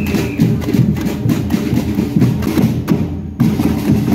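Street percussion band playing a fast, driving rhythm on large bass drums and snare drums, with sharp clicking strokes over the top. The playing breaks off briefly just after three seconds in, then comes back in together.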